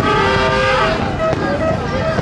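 Fireworks display with crackles and pops, over a crowd's chatter. A held tone of several pitches sounds for about a second near the start, then dips and stops.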